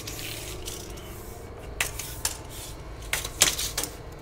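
A steel tape measure being handled with its blade extended, giving about five sharp light metallic clicks and rattles, mostly in the second half.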